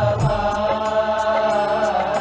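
Devotional chanting sung over music: a voice holding a long, slightly wavering note, with a steady light percussion beat and a drum thump at the start.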